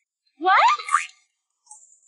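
A cartoon-style "boing" sound effect: one quick sweep steeply up in pitch, under a second long, about half a second in.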